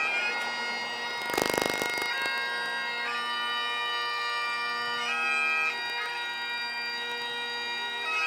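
Bagpipes playing a slow melody over their steady drone, the notes held a second or two each. About a second and a half in, a brief burst of noise cuts across the pipes.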